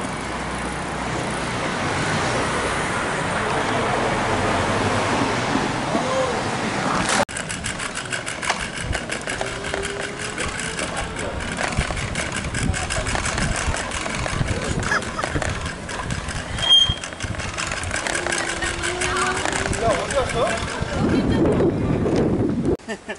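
Wind noise on the microphone and street traffic while riding along a city road. After a cut about seven seconds in, a dense run of rattling knocks from the ride over the pavement, with a few faint voices.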